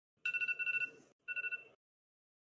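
Electronic timer alarm ringing in two trilling bursts of a steady high two-note tone, the second burst shorter. It sounds about fifteen seconds after the captains' answer time began, marking the end of the 15-second limit.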